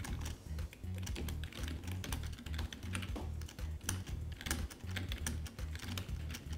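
Computer keyboard typing: quick, irregular keystrokes, several a second, over soft background music with a pulsing bass.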